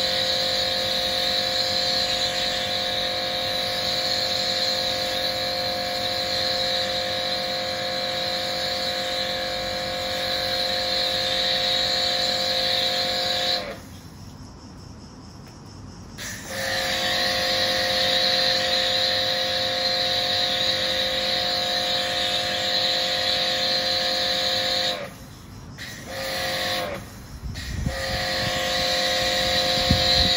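Karcher K7 pressure washer running steadily, its pump whining under the hiss of water spraying through an MJJC foam cannon. The cannon has its nozzle drilled out to 1.5 mm and passes too much water to make foam. The pump stops when the trigger is released about halfway through and starts again two or three seconds later, then cuts out twice more, briefly, near the end.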